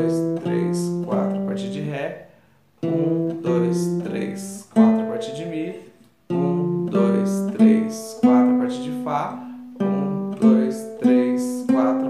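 Nylon-string classical guitar playing a four-note scale pattern in C major: single plucked notes in groups of four, each group starting one scale step higher than the last, with short breaks between groups.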